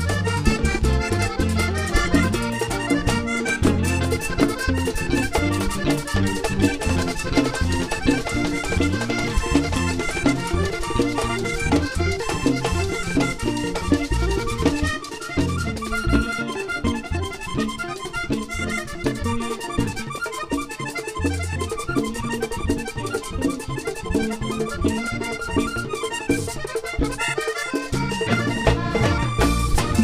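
Live vallenato band playing an instrumental passage: a button accordion leads the melody over drums and percussion. The low drums drop out for a moment about halfway through, then come back.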